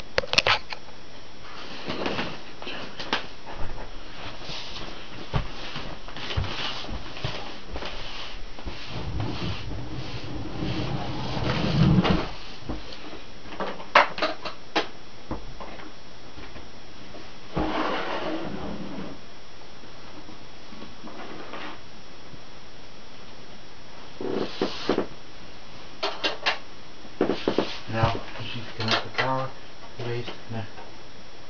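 Handling noise from the camera: scattered knocks, clicks and a rumble as it is moved about against clothing, over a steady background hiss, with brief indistinct voice sounds near the end.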